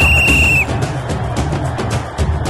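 A single whistle blast, one steady high tone lasting about two-thirds of a second at the start, from a kabaddi referee's whistle, over background music with a steady beat.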